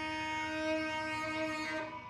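Saxophone holding one long, steady note that dies away near the end.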